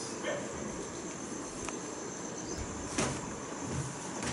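Quiet room tone with a steady high-pitched hiss, broken by a few soft clicks and rustles from a paperback picture book being handled and a child shifting on a bed. The loudest click comes about three seconds in.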